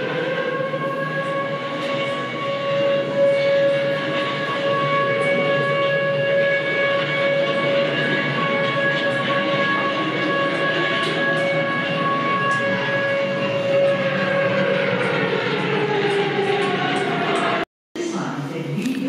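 An air-raid siren winds up, holds one steady wailing note, then winds down, falling in pitch over the last few seconds, over a low rumble. The sound cuts off abruptly just before the end.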